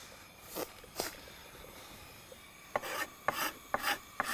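A carrot being grated on the coarse side of a metal box grater: rasping strokes, about four a second, starting about three seconds in. Two short scrapes come before them, about half a second and a second in.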